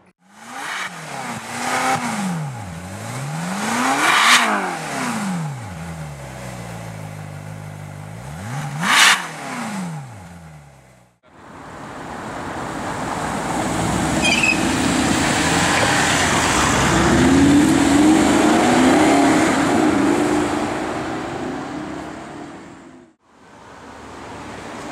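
Car engines in two short clips. First an engine is revved, its pitch falling and rising, with two loud peaks about five seconds apart. Then, after a cut, a long loud rush of engine and road noise builds, holds and fades away.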